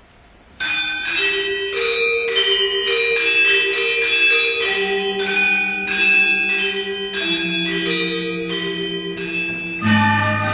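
Balinese gamelan angklung opening a piece: bronze metallophones struck in rapid repeated notes, with sustained ringing tones beneath. The music starts abruptly about half a second in.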